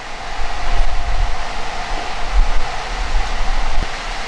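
Wind buffeting the microphone outdoors: a loud, gusting low rumble over a steady hum.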